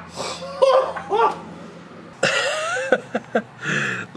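A man laughing in a run of short bursts, then louder and more drawn out from about two seconds in.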